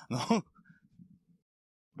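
A man gives one short vocal sound, a clipped syllable much like a throat-clear. It is followed by a faint low murmur, then about half a second of dead digital silence where the audio has been cut.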